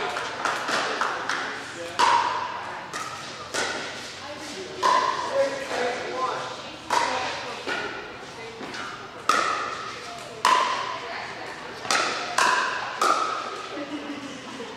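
Pickleball paddles hitting a plastic ball during a doubles rally: about a dozen sharp pops at irregular intervals of roughly a second, each ringing briefly in the large hall.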